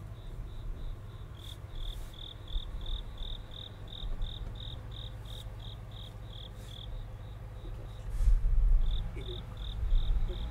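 Cricket chirping in a steady rhythm of about four chirps a second, with a short break a little past the middle, over a low rumble that swells for about a second near the end.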